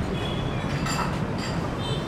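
Steady low rumble of distant city traffic, with several brief high-pitched chirps or clinks over it.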